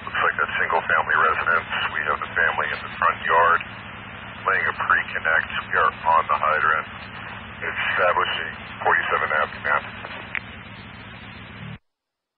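Fire-department radio traffic on a scanner: a voice coming through a narrow, tinny radio channel over a steady low hum. The transmission cuts off suddenly near the end.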